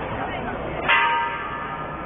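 A bell struck once about a second in, ringing with several bright tones that fade over about a second, over the chatter of a dense crowd.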